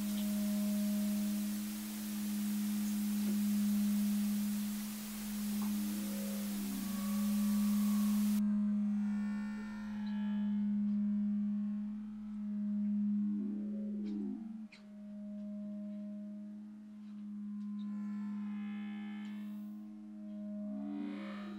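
Eerie low droning tone from a horror film's ambient score, held steady while it swells and fades every two to three seconds, with short sliding tones over it. A high hiss under it cuts off abruptly about eight seconds in.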